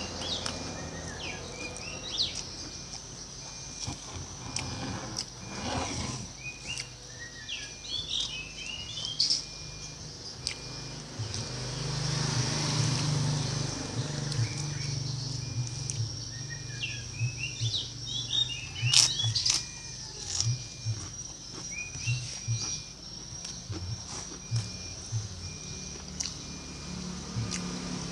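Small birds chirping in short bursts, several times over, while a vehicle passes by about halfway through, rising and fading. Sharp clicks come now and then, loudest about two thirds of the way in.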